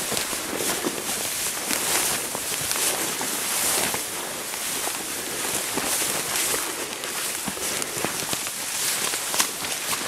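Footsteps and the swish of legs and clothing pushing through tall dry grass, with irregular rustling and crunching.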